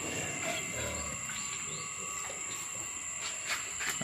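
Steady high-pitched insect drone, with a few faint chirps about a second in.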